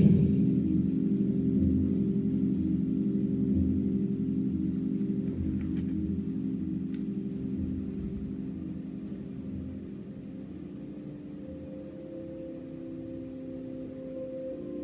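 A gong rings and slowly fades, several low tones sounding together as one long, dying resonance. A higher tone joins about three quarters of the way through.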